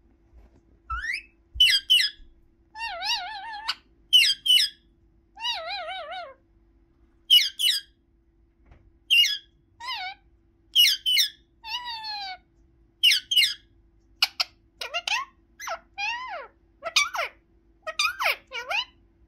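Indian ringneck parakeet calling: a string of short, high squawks and warbling, wavering chatter, roughly one call a second, with quicker falling calls near the end.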